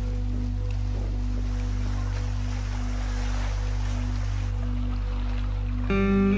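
Background music of steady, sustained low notes, over a faint wash of lake water lapping at the shore.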